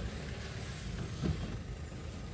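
Car engine running at low speed, heard from inside the cabin as the car creeps forward: a low, steady rumble.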